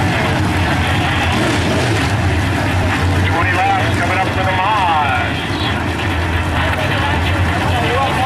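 A pack of IMCA Modified dirt-track race cars' V8 engines running steadily as they circle the oval together, with an indistinct voice mixed in.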